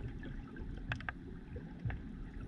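Underwater ambience picked up by a submerged camera: a continuous low rumble of moving water, with a quick cluster of three sharp clicks about halfway through and one more click near the end.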